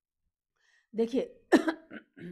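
A woman coughing a few times, starting about a second in, the loudest cough about halfway through the second second.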